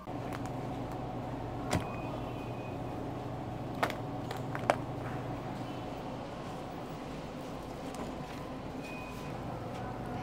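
Shopping cart rolling across a hard store floor: a steady rumble with a low hum, and three sharp rattles or clicks in the first five seconds.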